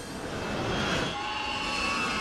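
Jet airliner engines running at high power: a steady rushing noise, with a high whine joining in about a second in.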